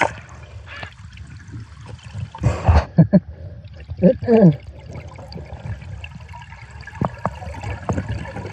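Underwater river sound with the microphone submerged: a low rush of water broken by several bursts of gurgling bubbles, some with short falling tones. A couple of sharp clicks come near the end.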